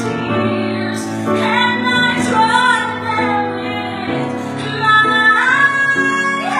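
A woman singing a gospel ballad with piano accompaniment, holding long notes with vibrato and sliding up into a higher note near the end.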